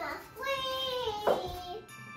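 A child singing a few long, drawn-out notes over music, the longest note held for nearly a second and sliding slightly downward before trailing off near the end.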